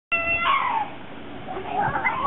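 A child's high-pitched voice: one held call that slides down in pitch, then a few shorter high calls near the end.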